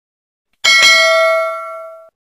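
A bell-chime notification sound effect, the kind laid on a subscribe-bell animation: two quick strikes just over half a second in, then a ringing tone of several pitches that slowly fades out.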